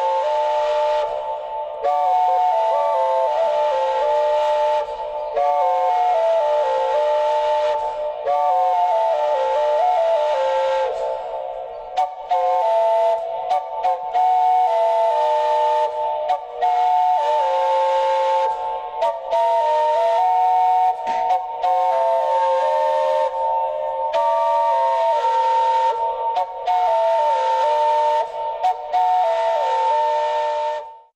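Replica Mesoamerican triple flute playing several notes at once: one tube holds a steady high note while the other tubes step through a melody below it. The tone is breathy, with short breaks for breath every few seconds.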